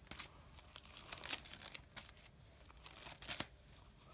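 Old paper envelopes rustling and crinkling as they are handled and shuffled through, with irregular crackles, a dense run about a second in and a sharper one near the end.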